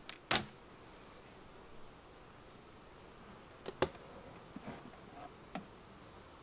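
Honeybees buzzing around an opened hive: a steady high buzz in two stretches, broken by a few sharp clicks and knocks as the wooden hive boxes and frames are handled.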